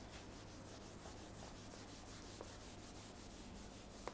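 Faint, soft rubbing over a steady low room hum.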